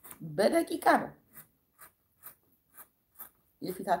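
Scissors cutting through fabric: a series of short, crisp snips, about two a second.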